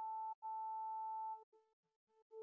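Serum software synthesizer lead patch, a synced analog sine oscillator through a filter with key tracking, playing a plain tone with a few overtones. A short note is followed by a held note of about a second, then a brief faint note near the end.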